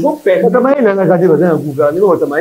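Only speech: men talking in a studio conversation.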